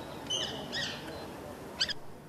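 Bird calls: two short chirps about a third of a second in, then another brief, sharp call near the end.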